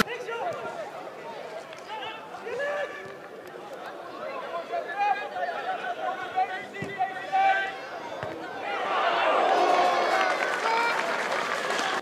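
Outdoor football-match sound: scattered shouts and calls from players and spectators on the pitch, too distant to make out. A louder swell of shouting comes about nine seconds in and lasts a couple of seconds.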